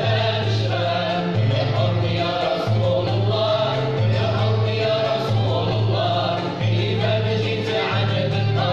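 Arab-Andalusian orchestra of ouds, violins, cello and other strings playing with voices singing together in unison, the bass line stepping to a new note about every second and a bit.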